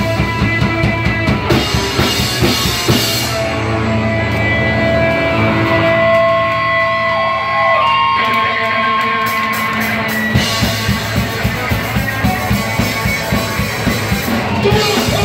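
Live band playing loud electric guitar and drum kit. A few seconds in the drums drop out and sustained guitar tones hang on alone, then the full drum kit comes back in near the end.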